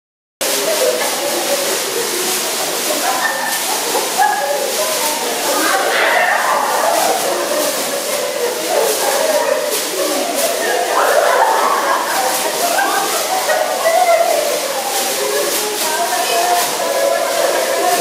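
Plastic bags rustling and crackling as several people wave them through the air, under a group's overlapping chatter and laughter.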